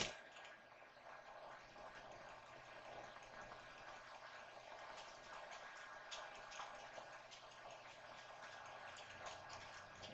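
Near silence: faint swishing and soft scattered ticks from a plastic-ribbed hand fan being waved, after a short click at the very start.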